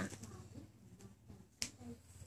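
Faint room tone with a single sharp click about three-quarters of the way through.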